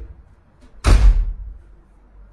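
A single loud thump about a second in, heavy in the low end, dying away within half a second.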